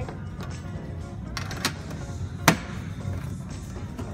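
Background music over a steady low hum, with a few sharp taps as items from a metal tin are handled and set down on a table; the loudest tap comes about two and a half seconds in.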